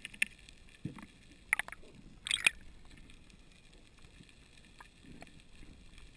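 Underwater ambience with sharp hard clicks and rattles close to the microphone: a soft low thump about a second in, then two loud clusters of clicks around the middle, with a few faint ticks later.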